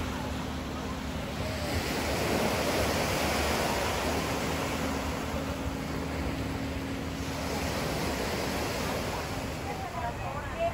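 Small waves breaking and washing up the shore, the surf swelling and easing back twice.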